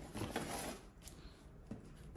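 Faint clicks and rattles from an air-suspension strut with its air bag and top mount being handled and turned by hand.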